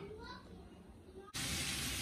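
Strips of carrot and potato frying in a pan, a steady sizzle that cuts in abruptly about a second and a half in, after a quiet start.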